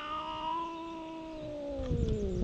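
Stray cat yowling at another cat in a fight standoff: one long, drawn-out call that sinks lower in pitch near the end.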